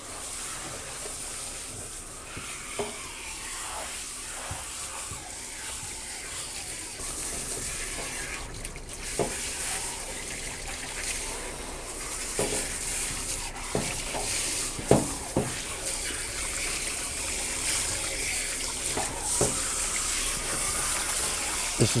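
Water running from a grooming tub's hand sprayer onto a wet dog and splashing into the tub: a steady hiss, with a few brief knocks or splashes in the second half.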